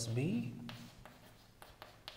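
Chalk writing on a chalkboard: a handful of short, faint scratches and taps of the chalk stick against the board.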